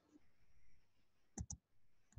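A computer mouse double-clicked: two quick sharp clicks about one and a half seconds in, against faint room tone.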